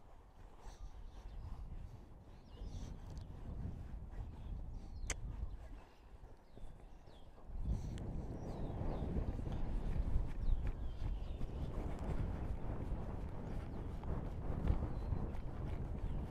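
An off-the-track Thoroughbred mare trotting in a sand arena, her hoofbeats landing softly in the footing. The sound grows louder about halfway through.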